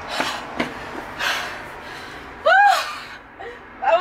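A woman breathing hard after a run: heavy breaths in the first second and a half, then a short, loud, high-pitched vocal exclamation that rises and falls about two and a half seconds in.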